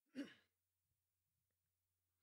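A person's brief breathy exhale, falling in pitch, just after the start, then near silence with a faint steady low hum.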